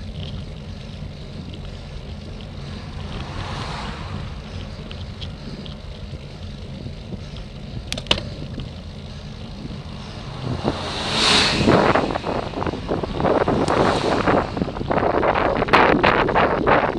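Wind rumbling and buffeting on a bicycle-mounted camera's microphone while riding, with a louder rush of noise starting about eleven seconds in as an oncoming coach passes close by.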